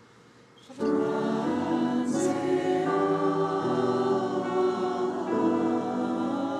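Mixed choir enters after a brief quiet, about a second in, singing held chords that change every second or so, with a crisp 's' consonant sung together a little after two seconds.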